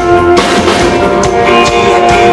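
Live band playing an instrumental passage: guitars and keyboard holding chords over a drum kit beat. The chord changes about half a second in.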